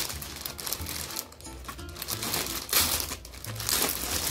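Clear plastic poly bag around a packaged garment crinkling as hands turn and handle it, in irregular rustles that are loudest near the end.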